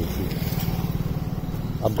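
A motor vehicle engine idling steadily: a low, evenly pulsing hum that holds one pitch.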